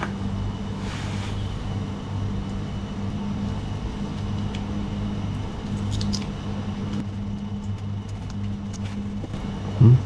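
A steady low machine hum, with a few faint small clicks of handling near the start and about six seconds in.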